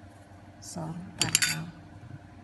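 Metal spoon clinking against a ceramic bowl while white granules are spooned in, with a quick run of sharp clinks a little past a second in.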